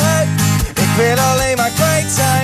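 A man singing long, held, wordless notes over a strummed steel-string acoustic guitar.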